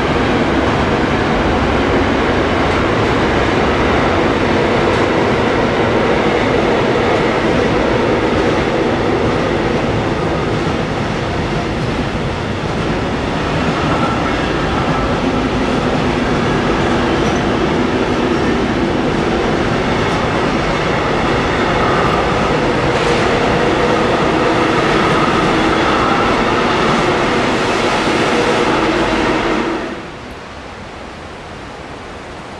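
A long electric-hauled freight train of container wagons passing at speed, with a steady, loud noise of wheels on the rails that runs on unbroken.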